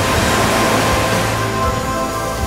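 Background music of sustained, held chords, with a swell of noise in the first second.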